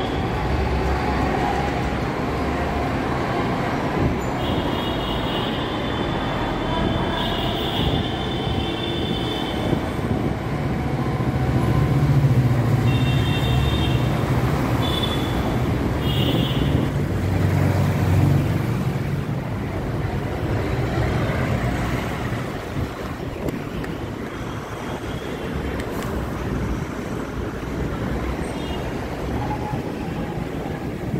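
Steady road traffic passing on a busy city road, with vehicles swelling louder about twelve and eighteen seconds in. Short high-pitched tones come and go in the first half.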